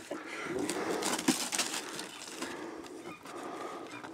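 Newspaper gift wrapping rustling and tearing as a cardboard shoe box is unwrapped and handled, in irregular crackles.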